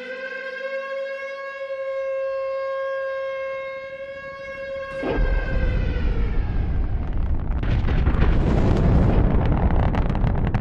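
A test-site warning siren sounds one steady tone for the first half, then about halfway through a rocket engine static firing starts suddenly. The Saturn F-1 engine's roar builds and grows louder, drowning everything out.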